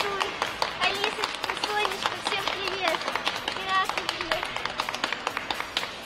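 Crowd noise in an ice rink: scattered clapping over indistinct voices and faint music.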